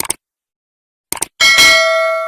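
Sound effects of a subscribe-button animation: a quick double mouse click at the start, another double click about a second in, then a notification-bell ding that rings on with several tones and slowly fades.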